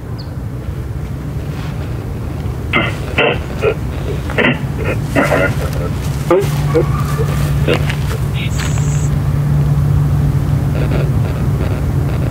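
Ghost box speaker (a modified 'portal' speaker running spirit-box programs through noise filters) putting out a steady low hum with short, chopped speech-like fragments in the middle, which the investigators label a disembodied voice. The hum grows stronger about halfway through, and a brief high tone sounds a little later.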